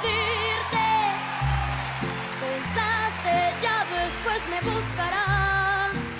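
A young girl sings a ballad with vibrato on her held notes, over instrumental accompaniment whose bass notes change about every second.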